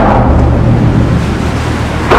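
A small motorboat's engine running loud and low as the boat passes under a bridge, a steady din with water rushing alongside.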